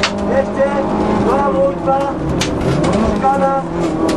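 Car engine heard from inside the cabin, running under load. Its note drops briefly around the middle and climbs again as the car lifts off and accelerates, with a sharp click a little after halfway.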